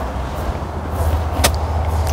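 Steady low outdoor rumble, with one brief high hiss about one and a half seconds in.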